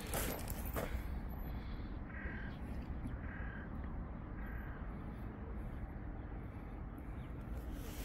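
A crow cawing three times, about a second apart, over a steady low background rumble.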